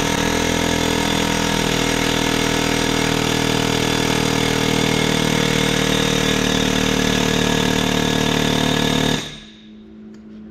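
Pneumatic air hammer running in one continuous rapid burst against the case of an Eaton 13-speed truck transmission, stopping suddenly about nine seconds in.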